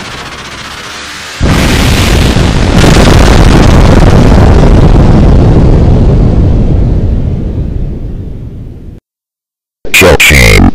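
Trailer sound effect of a jet aircraft taking off with glowing exhausts: about a second and a half in, a sudden loud roar starts, surges again a second later, holds, then fades away before cutting off near the end. Music is fading low under the start.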